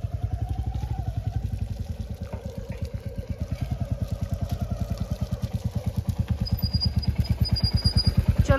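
Royal Enfield 'Bullet' motorcycle engine running at low revs, an even beat of about six pulses a second, as the bike crawls down a rough, muddy track.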